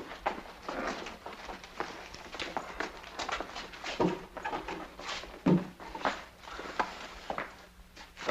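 Footsteps of people walking, a string of irregular short scuffs and clicks with a couple of heavier thuds.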